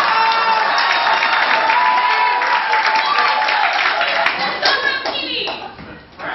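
Theatre audience applauding and cheering, the clapping thinning out and dying away about five seconds in.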